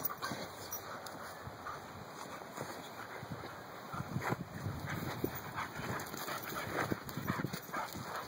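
A boxer and a black puppy play-fighting, with short dog vocalisations and scuffling, getting busier and louder from about four seconds in.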